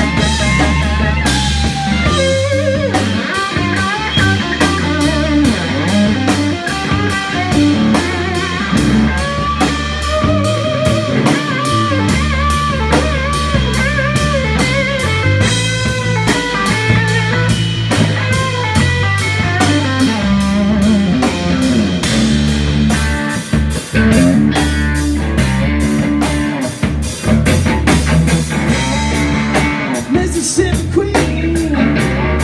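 Live instrumental rock passage: an electric guitar plays a lead line with bent, wavering notes over a steady drum-kit beat.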